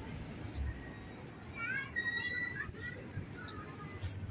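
Distant children's high-pitched voices calling out in a playground, the calls bunched about halfway through, over a low background rumble.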